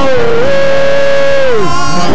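A man singing one long held note through a microphone and PA, over steady instrumental backing; the note falls away near the end.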